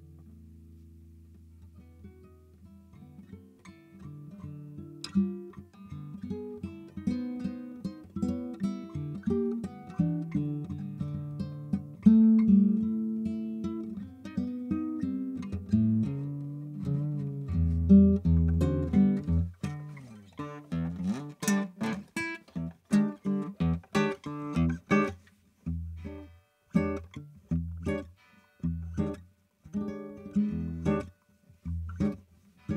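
Solo guitar improvisation. It opens softly on a fading low note, then single plucked notes build up. From about halfway it grows louder, with deep bass notes and short rhythmic chord hits separated by brief pauses near the end.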